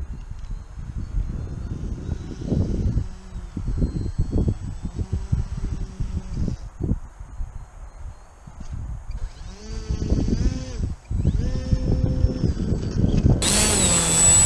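HobbyZone Sportsman S RC plane's electric motor and propeller whining as it taxis on grass, rising and falling in pitch as the throttle is opened and eased, louder near the end. Gusty wind rumbles on the microphone throughout.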